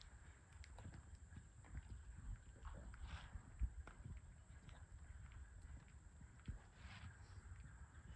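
Faint, muffled hoofbeats of a horse cantering on arena sand, over a low steady rumble, with one sharper thud about three and a half seconds in.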